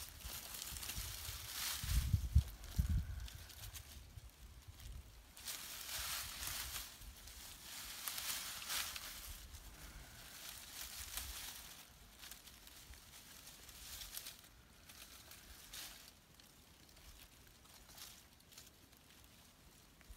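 Dry leaves and soil rustling and scraping in irregular bursts as a hand digs in a small hole in forest leaf litter, with a few low thumps about two seconds in; the rustling grows fainter toward the end.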